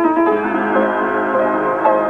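Piano playing an Ethiopian melody, with several notes sounding and overlapping at a time.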